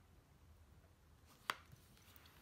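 One sharp click about one and a half seconds in, an eyeshadow palette's lid snapping shut, against near silence.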